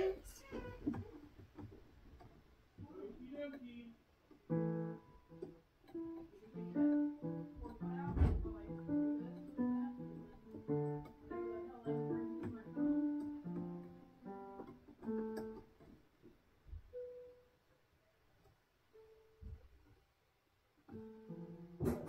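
A child picking out notes on a piano, one or two keys at a time in an uneven, halting run that starts about four seconds in and thins out after about fifteen seconds, with a few stray notes near the end.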